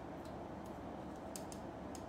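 Faint light clicks, about six scattered through two seconds, from the wing parts and joints of a Metal Build Freedom Gundam figure being posed by hand, over a steady low background hum.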